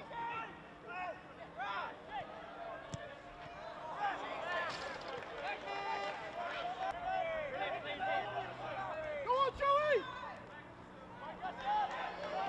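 Several voices shouting and calling across an outdoor football pitch, overlapping and loudest about ten seconds in, with a single sharp knock about three seconds in.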